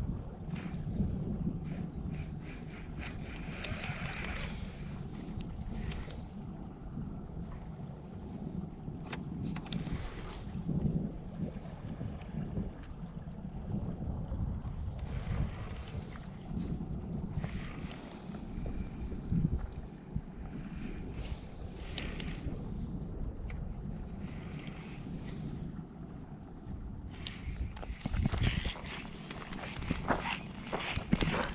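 Wind buffeting the camera's microphone, a steady low rumble, with occasional brief rustles of the rod and reel being handled.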